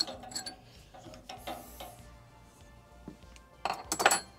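A few sharp metallic clinks, the loudest cluster near the end, as metal is handled on a drill-press table, over faint background music.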